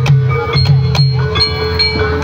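Loud Javanese jaranan/reog ensemble music: a low drum beat about three times a second under sharp percussion strokes and held, ringing pitched tones.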